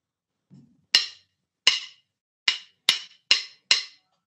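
Drumsticks clicked together as a count-in: two slower clicks, then four quicker, evenly spaced ones.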